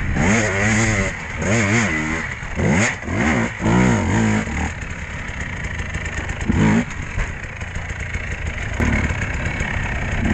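Dirt bike engine revving in a string of quick throttle bursts, the pitch rising and falling several times over the first few seconds, then running at lower revs with one short rev-up about two-thirds of the way through.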